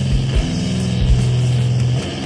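Doom metal demo recording: heavily distorted electric guitar and bass holding a low chord, with a few slow kick drum hits underneath.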